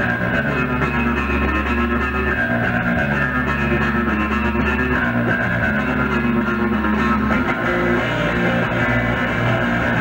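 Live rock band playing, electric guitar over a bass guitar holding long low notes that change every couple of seconds. It is a lo-fi audience bootleg recorded on a MiniDisc recorder.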